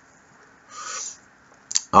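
A man's breath while smoking a cigarette: one short breathy rush about a second in, then a small mouth click just before he speaks again.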